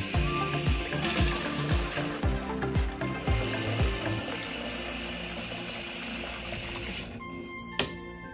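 Background music with a steady beat, over water running from a barn water spigot into a plastic bucket. The water starts about a second in and shuts off sharply near the end.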